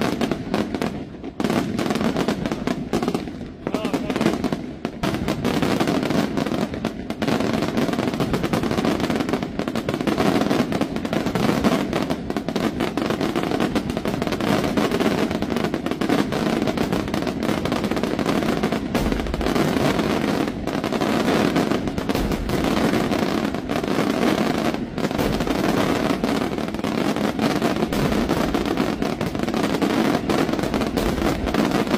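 Aerial fireworks display: shells bursting in rapid, near-continuous succession, the sharp reports overlapping one another with crackle between them and no real pause.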